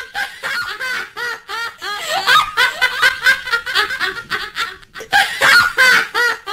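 Canned laughter: several high-pitched women's voices giggling and cackling in quick, overlapping peals, loudest in the second half.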